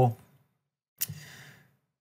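A man's short breath in through the mouth, opening with a faint lip click about a second in.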